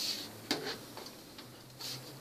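A few faint, light clicks and ticks from the plastic and metal parts of an all-in-one desktop computer being handled as it is taken apart.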